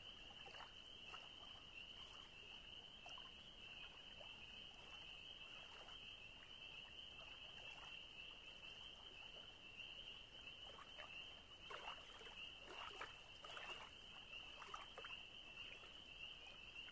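Faint, steady high-pitched chorus of frogs calling without a break, with soft splashes of small waves lapping on the sandy shore that grow a little busier past the middle.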